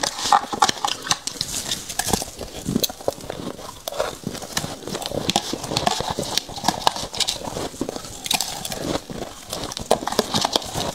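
Close-miked chewing of powdery freezer frost: a dense, continuous run of small crisp crunches and crackles.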